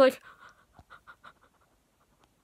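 A woman's rapid, short panting breaths through an open mouth, about eight a second, fading out after about a second and a half.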